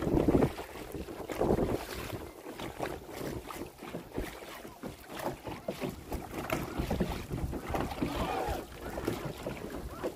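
Wind buffeting the microphone over water splashing as a dragon boat crew paddles at sea, with irregular louder surges.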